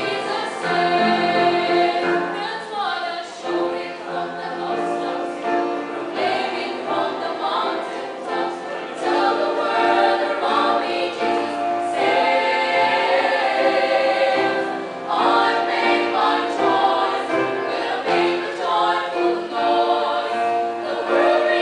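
A choir of young women singing a Christian hymn in several parts, with held notes and chords.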